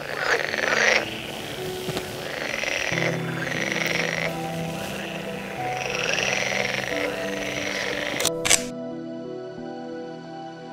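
Frogs calling at night, a run of short arching calls about once a second, over soft music with long held notes. Two sharp clicks a little after eight seconds in; then the frog calls stop and only the music goes on.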